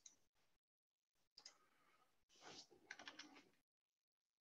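Faint computer keyboard typing: a single tap about a second and a half in, then a quick run of keystrokes a second later.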